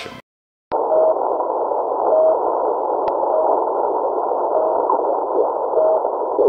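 Shortwave radio reception of the Russian station known as the Pip on 3756 kHz: short, steady beeps a little over a second apart, five in all, over a constant hiss of radio static, after a brief dropout near the start.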